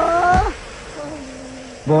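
A high, wavering, drawn-out cry that slides down in pitch and breaks off about half a second in. A fainter, lower held tone follows.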